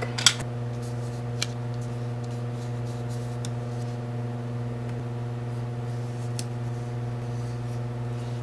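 A steady low electrical hum with evenly spaced overtones, with a few short, faint clicks scattered through it.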